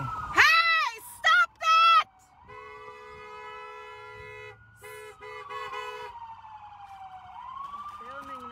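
A few loud shouts in the first two seconds, then a car horn honking: one long blast of about two seconds followed by four short toots. Under it all a police siren wails slowly up and down.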